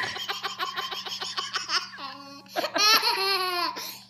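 A baby laughing hard in a quick run of short pulses, about seven a second, for the first two seconds, then louder, longer laughing about three seconds in.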